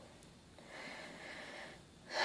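A faint breathy hiss lasting a little over a second, starting about half a second in.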